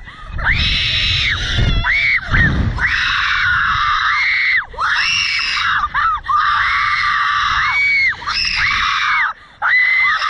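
Two riders on a slingshot reverse-bungee thrill ride screaming over and over, in long high-pitched screams with short breaks for breath. A low rumble, typical of wind on the microphone, sits under the screams between about half a second and three seconds in.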